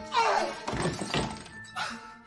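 Film soundtrack music with a short wailing voice that bends up and down in pitch near the start, and a few thuds.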